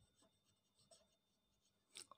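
Near silence, with the faint scratching of a pen writing on paper.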